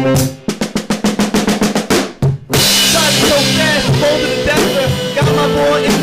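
Live band playing. A drum-kit fill of fast, evenly spaced snare strokes runs for about two seconds, then the full band comes in with a cymbal crash, with bass, electric guitar and saxophone over the drums.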